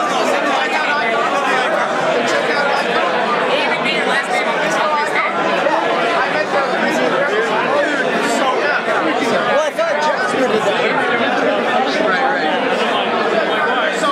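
Crowd chatter: many people talking at once in a packed room, a steady din of overlapping voices.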